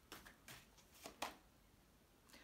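Tarot cards being handled and dealt onto a table: a handful of faint, short card slaps and snaps, the sharpest just over a second in.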